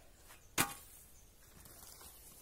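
Rusty shovel blade giving one sharp metallic clank with a short ring, about half a second in.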